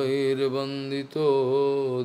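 A man chanting a Sanskrit verse in praise of the Ganges in a melodic, drawn-out voice: two long held phrases with a brief break about a second in.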